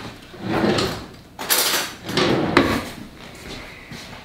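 Someone working in a kitchen: three loud clattering bursts in the first three seconds, like drawers and cabinet doors being opened and shut with things rattling inside.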